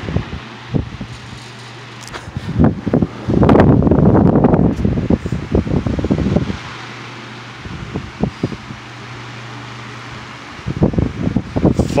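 Two oscillating desk fans running together, a 1960s GE oscillating desk fan and a plastic desk fan, their motors humming steadily. About three and a half seconds in, for about three seconds, and again near the end, their airflow sweeps across the microphone in loud gusts.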